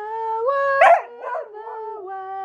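A 14½-year-old Border Collie howling ('singing'): one long howl that steps up in pitch, breaks into a louder, rougher cry about a second in, then settles onto a lower held note.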